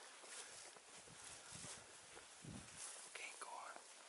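Faint rustle and swish of footsteps walking through dry grass, with a short high call about three seconds in.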